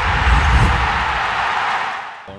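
Sound design for an animated logo intro: a loud, steady rushing noise over a deep rumble, easing off near the end.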